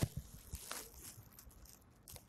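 Rustling and a few faint clicks and knocks picked up by a police body-worn camera's microphone, the noise of the camera rubbing against the officer's uniform and gear as he moves; the sharpest knock comes right at the start, another about half a second in.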